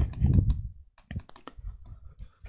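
Light, irregular clicks and taps of a stylus tip on an interactive board's screen while writing, after a brief low rumble at the start.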